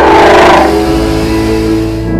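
Ford Mustang V8 accelerating past, loudest about half a second in and fading away, over background music.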